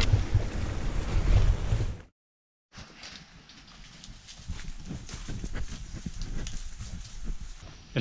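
Wind rumbling on the microphone for about two seconds, then a brief dropout. After it, footsteps on a trail littered with dry leaves and fronds: a quick, uneven run of crackles and taps that grows louder near the end.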